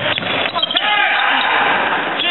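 A basketball bouncing on a hardwood gym court during play, with crowd voices and shouts throughout.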